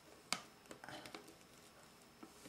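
Faint handling of lace fabric on a lampshade frame as pleats are arranged: one sharp click about a third of a second in, then a few softer clicks and rustles.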